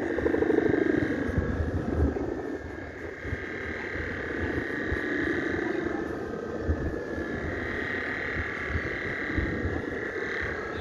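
Droning, pulsing hum of a Balinese kite's guangan, the bamboo hummer bow strung across the top of the kite, singing in the wind and swelling and fading every few seconds. Wind gusts rumble on the microphone underneath.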